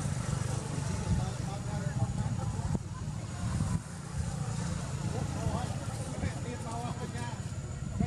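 Steady low rumble with faint, indistinct voices in the background.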